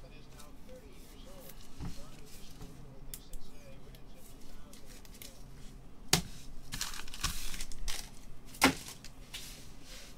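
Gloved hands handling trading cards and their packaging: rustling and crinkling, with two sharp clicks about six seconds in and just before nine seconds.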